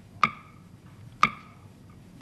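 Game-show countdown clock ticking once a second, each tick sharp with a brief ringing tone: two ticks, about a quarter second in and again a second later, as the clock counts down a player's time to give a clue.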